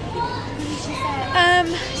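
A child's high voice calling out briefly amid a busy store's background, over a steady low hum.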